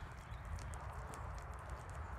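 Footsteps on a wet tarmac footpath, faint ticks over a low steady rumble on the microphone.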